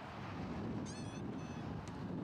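Wind rumbling on the microphone outdoors, with a brief, wavering, high-pitched call about a second in and a faint tick near the end.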